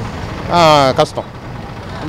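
A man speaks one short phrase about half a second in, over the steady noise of street traffic.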